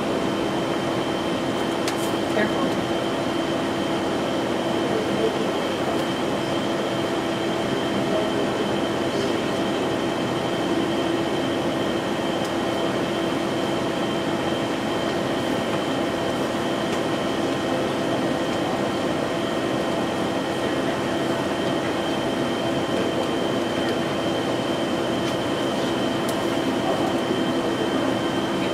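Steady hum of running kitchen machinery: a constant low drone with a faint high whine above it, unchanging in level.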